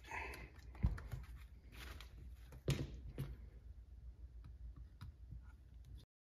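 Small clicks and knocks of hand tools and RC crawler parts being handled during assembly, with sharper taps about one second in and twice near the three-second mark, and lighter ticks after.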